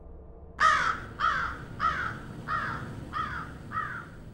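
A bird calling in a run of short, evenly spaced calls, about three every two seconds, starting about half a second in and growing steadily fainter.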